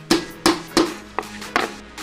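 A hammer strikes five quick times, about three a second, setting a metal rivet in leather, each blow sharp and ringing briefly. Electronic background music plays underneath.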